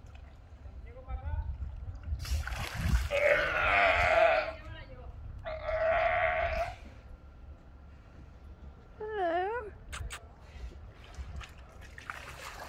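A sea lion hauling itself out of the water with a splash and giving two long, loud, hoarse calls a couple of seconds apart.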